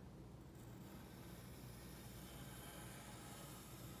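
Faint, steady scratch of a pencil drawing one long line across a sheet of paper.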